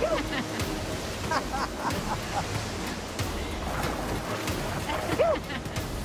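Whitewater rushing steadily around an inflatable raft, with people on board whooping and laughing a few times over it.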